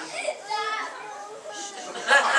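Indistinct, high-pitched voices of audience members talking in a room, quieter than the performer's amplified speech around them.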